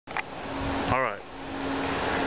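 A steady low hum over even background noise, with a click just after the start and a brief voice about a second in.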